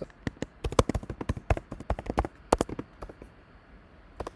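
Typing on a computer keyboard: a quick, uneven run of key clicks for the first two and a half seconds or so, then fewer, fainter taps near the end.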